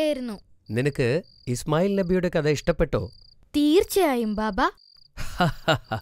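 Crickets chirping in short, high, evenly pitched bursts about once a second, under voices talking.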